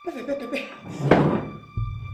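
A woman's voice, with background music. Near the end a sudden low thump comes in, and a steady deep bass follows it.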